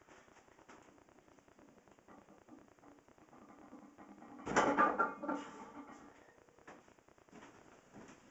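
Heavily loaded barbell with iron plates (about 809 lb) coming down onto a wooden rack: one loud clank of metal and wood about halfway through, with light knocks and rustling around it.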